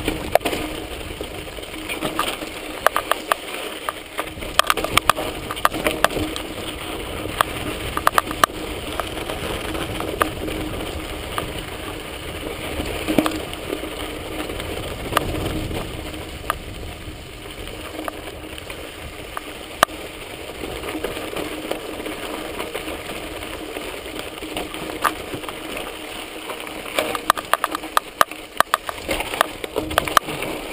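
Mountain bike riding down a dirt and rock singletrack: steady tyre noise on dirt and loose stones with frequent sharp rattles and knocks from the bike. The rattling is thickest over the rocky stretches near the start and near the end, and smoother in the middle.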